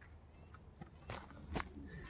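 Split madrona firewood knocking as pieces are set onto a stack, with two clear wooden knocks about a second and a second and a half in and some lighter clatter and footsteps between them.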